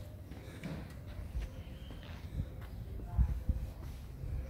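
Footsteps and handling noise from a camera being carried on foot: a low, uneven rumble with scattered soft thumps, two of them louder a little past three seconds in.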